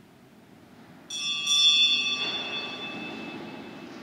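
A small bell struck about a second in, then again just after, its high ringing tones fading slowly.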